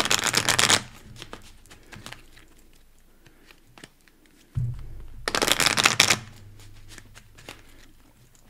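A deck of tarot cards being shuffled, with two quick rattling bursts of cards riffling together, one at the start and one about five seconds in. Lighter clicks of card handling fall in between.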